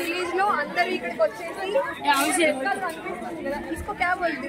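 Speech: a woman talking, with people chattering behind her.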